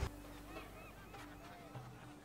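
Faint background ambience from a period TV drama's soundtrack: a scattering of short, arching animal calls, several in quick succession.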